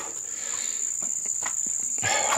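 An insect trilling steadily at a high pitch, without a break.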